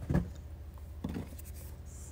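Two brief rustles of hands rummaging through dog toys in a wooden toy box, one at the start and one about a second in, over a low steady hum.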